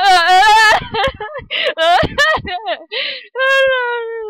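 Girls' voices making playful noises: a long high wavering wail that breaks off about a second in, then short yelps and laughs, then a long whine sliding down in pitch near the end, in the manner of a mock plane coming in to land.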